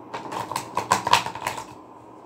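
A deck of cards being shuffled by hand: a quick, irregular run of crisp clicks and slaps lasting about a second and a half.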